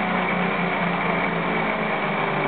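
Electric motor on a bench ignition test rig spinning a Minarelli scooter ignition flywheel, running steadily while its speed eases down from about 4,400 to 3,600 rpm.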